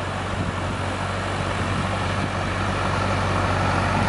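A motor vehicle engine running steadily on the beach, growing slightly louder toward the end.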